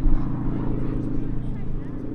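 North American Harvard IV's Pratt & Whitney R-1340 Wasp radial engine and propeller in flight, a steady drone.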